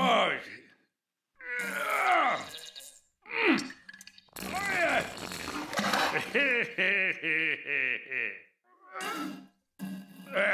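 A cartoon character's voice making wordless exclamations and strained vocal sounds in about six separate bursts, the longest near the end held with a shaking, wavering pitch.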